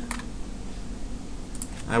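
A few faint clicks of a computer keyboard and mouse during CAD work, over a low steady hum.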